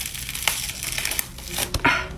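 A liquid-latex and toilet-paper prosthetic piece being peeled off the skin, an irregular run of small crackles as it tears away.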